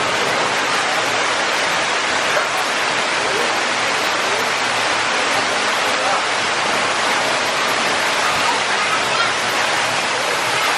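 Steady rush of falling water from an indoor artificial waterfall.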